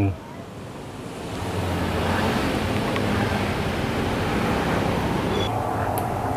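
Gas stove burner flame running under a wok of hot oil, a steady rushing noise that swells about a second and a half in and then holds even.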